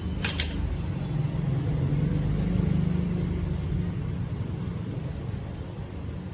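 A low, steady background rumble that swells a little in the middle, with two short sharp clicks near the start.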